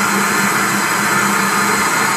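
Midea high-speed blender motor running steadily at full speed, puréeing cooked hawthorn berries with their cooking water into a smooth paste.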